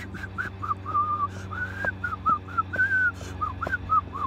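A man whistling a quick tune through pursed lips: a run of short notes, a few held a little longer, in a narrow high range.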